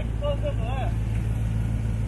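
A small engine running with a steady low hum, with a short, faint voice over it early on.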